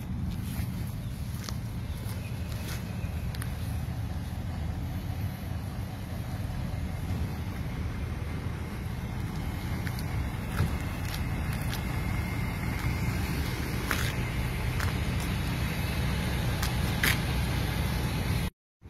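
Steady low engine rumble running throughout, with a few faint clicks.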